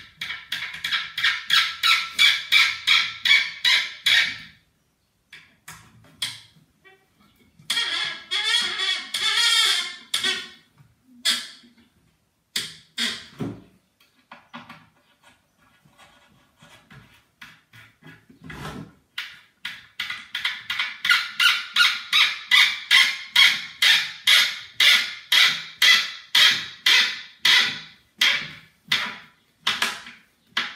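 Rhythmic squeaking, about three squeaks a second, as a screw is turned by hand into a melamine-faced particleboard kitchen-cabinet panel, with one longer wavering squeal partway through. The squeaking stops for a few seconds in the middle, then starts again for a longer run.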